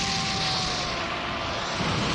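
Anime energy-beam sound effect for a Super Kamehameha blast: a loud, steady rushing noise, with a faint tone sliding slowly downward under it.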